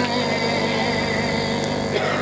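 Steady hum made of several held tones, heard in a pause between sung phrases over the sound system.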